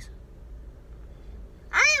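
Low steady hum of a car's cabin, then, near the end, a young boy's loud, very high-pitched, sing-song drawn-out "I…".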